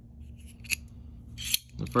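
Reate Exo-M gravity knife's double-edged blade sliding out of its titanium handle: a light click about two thirds of a second in, then a short metallic slide near the end.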